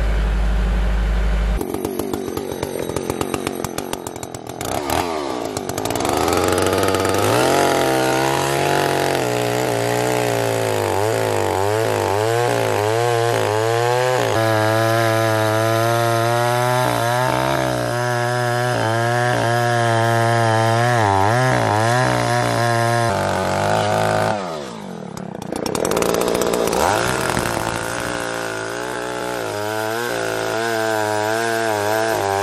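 A Kubota L4701 tractor's diesel engine runs for the first second or so. Then a two-stroke chainsaw, a Husqvarna L77, revs up and cuts into a large white oak log, its pitch bending up and down under load. It drops away briefly near the end, then runs again.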